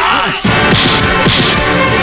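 Film fight sound effects: several sharp, cracking punch hits over dramatic background music.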